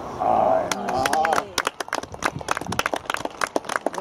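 A loud human call for about a second at the start, followed by a rapid, irregular run of sharp clicks.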